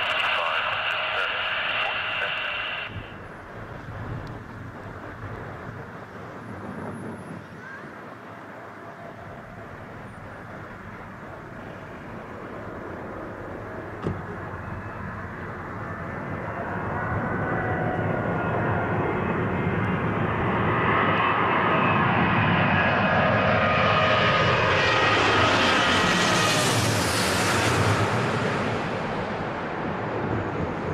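Boeing 777 on final approach passing low overhead: its jet engine noise builds over about fifteen seconds to a loud peak, with a whine that falls in pitch as it goes over, then eases slightly near the end.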